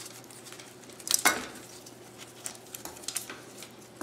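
Light metallic clicks and clinks from a vintage Suntour rear derailleur and its chain being handled and worked loose by hand, the loudest click about a second in, then a few lighter ticks.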